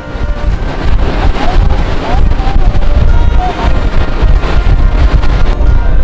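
Strong wind buffeting the microphone on the open stern deck of a fast passenger ferry under way, over the rush of the churning wake.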